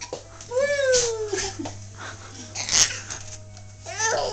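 A baby's high voice: one drawn-out call that falls in pitch, starting about half a second in and lasting about a second, followed near three seconds in by a short, sharp breathy burst.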